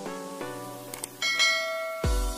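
Subscribe-animation sound effect over light plucked background music: a mouse click a little after a second in, then a bright notification-bell chime that rings on to the end.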